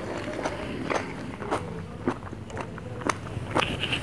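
Close-miked mouth sounds of eating ice cream falooda: small scattered clicks and smacks from the mouth and spoon. Near the end, a steady sucking hiss begins as the falooda is sipped through a straw.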